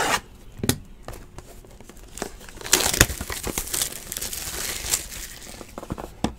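Plastic wrapping being torn off a trading-card box and crumpled, a crinkling that lasts about two seconds in the middle, after a couple of light knocks near the start as the box is handled.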